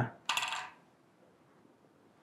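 A brief rattling jingle, under half a second long, just after the start, then near silence.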